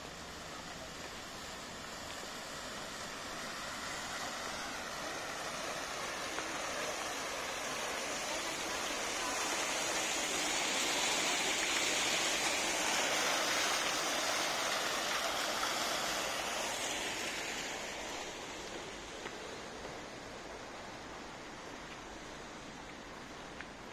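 Fountain jet splashing into a stone basin: a steady rush of falling water that grows louder to a peak in the middle and fades over the last few seconds.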